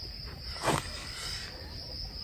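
Steady, high-pitched drone of insects calling. A single short noise cuts in about two-thirds of a second in.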